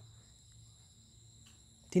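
Faint steady high-pitched tones over a low hum, the background of a pause in speech; a voice comes back in right at the end.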